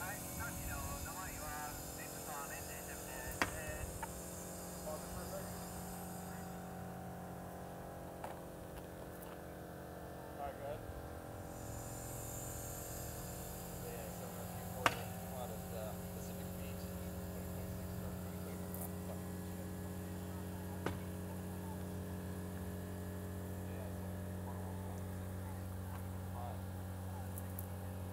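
Air pump of a trailer-mounted pneumatic mast running with a steady low hum as the telescoping mast extends, the hum growing stronger about halfway through. A few sharp clicks sound over it, the loudest near the middle.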